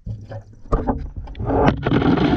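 Water sloshing and splashing around sneakers soaking in a tub, with a few knocks and bubbling. It starts suddenly and grows louder and denser in the second half.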